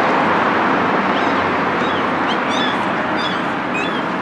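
Small birds chirping in the trees, a string of short high chirps starting about a second in, over a steady background hiss of outdoor noise.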